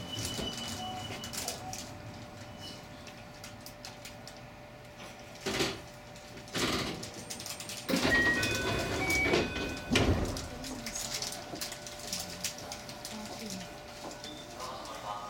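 Ambience inside the cab of a stationary train: faint distant voices under a low hum, a few sharp knocks and clicks, and a cluster of short tones about eight to nine seconds in.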